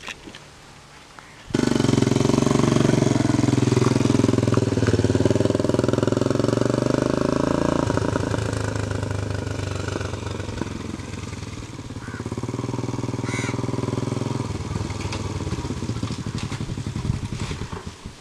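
Motorcycle engine running, starting abruptly about a second and a half in. It is loudest early on, drops back about eight seconds in, picks up again and eases off near the end as the bike comes up and stops.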